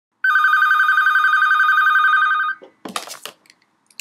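A telephone ringing: one warbling, trilling ring lasting a little over two seconds. A brief clatter follows as the handset is picked up.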